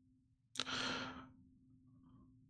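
One audible sigh, a breath let out through the mouth, starting about half a second in and fading out within a second.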